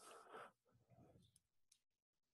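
Near silence on a video call's audio, with only faint, indistinct sounds in the first second and a half.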